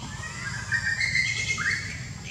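A baby macaque crying: a high, drawn-out wavering squeal lasting about a second and a half, ending in a short rising squeak.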